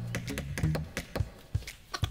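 A rapid run of hammer taps, about six a second, as a sign is hammered onto a fence, over light background music.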